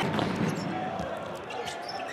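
Basketball being dribbled on a hardwood court, a few bounces over arena crowd noise.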